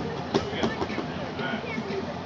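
Indistinct talking in a reverberant room, with a few sharp knocks in the first second.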